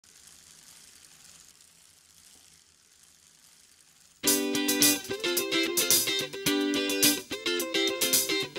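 Faint hiss, then about four seconds in a song's intro starts abruptly with a strummed guitar playing chords in a steady rhythm.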